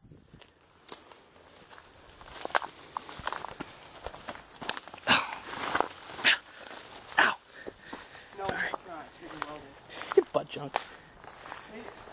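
Footsteps pushing through dense weeds and brush: leaves and stems rustling and twigs crackling underfoot in a run of short snaps, with louder bursts of rustling about halfway through.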